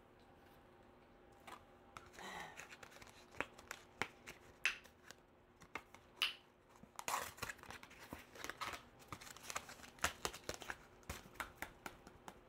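Hands handling a perfume box and its bottle: a faint, irregular scatter of short rustles and clicks of packaging, starting about a second and a half in.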